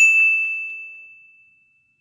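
A single bright chime, a bell-like ding sound effect, struck once and ringing out as it fades away over about a second and a half.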